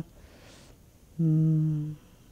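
A woman's short, steady, closed-mouth hum, "mmm", held at one pitch for under a second in the second half: a hesitation sound between sentences of speech.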